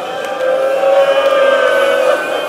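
Mourners weeping aloud, one voice drawn out into a long held wailing note from about half a second in.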